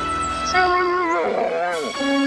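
Theme music with a dog's howl-like call over it, starting about half a second in: a wavering, drawn-out cry that bends down in pitch and stops just before the end.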